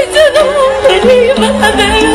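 A voice singing a wavering, heavily ornamented melody over instrumental accompaniment that holds steadier notes beneath it, in the style of Burmese stage-play song.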